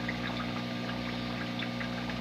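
Turtle tank's water pump running with a steady hum, with water bubbling lightly in the tank.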